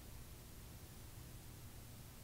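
Near silence: room tone, a faint steady hiss with a low hum.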